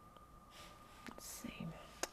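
Faint breathy whispering from a woman muttering to herself, with a single small click about a second in, over a faint steady hum.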